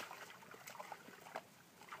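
Faint small splashes and trickling of water as a Weimaraner wades into the shallow, muddy edge of a pond, a few soft ticks scattered through it.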